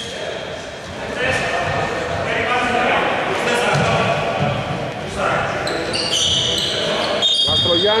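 Players' voices and shouts echoing around a large indoor basketball hall during a stoppage, with several short high-pitched sneaker squeaks on the wooden court near the end.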